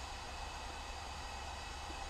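Steady, even hiss with a low hum underneath and no distinct sounds.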